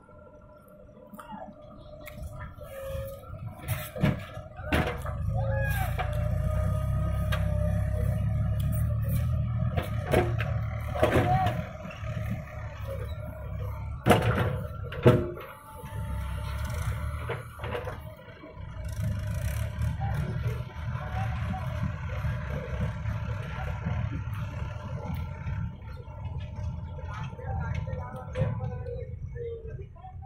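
JCB 3DX backhoe loader's diesel engine working under load while the backhoe digs soil, its rumble rising and falling as the hydraulics work. There are several sharp knocks from the arm and bucket, the loudest about 14 and 15 seconds in.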